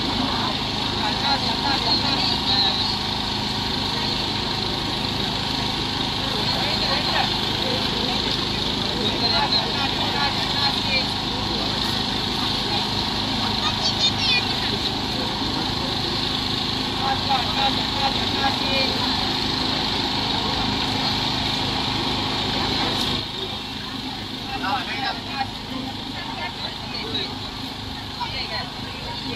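A steady engine hum runs under the chatter of a crowd, then cuts off suddenly a little past three-quarters of the way through.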